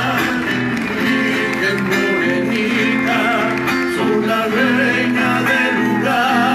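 Live band playing: acoustic guitar strummed, with a voice singing over it.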